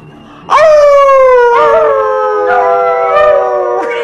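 A small dog howling together with a person, starting about half a second in: a long howl that slowly falls in pitch and lasts over three seconds, with a second voice joining about a second later.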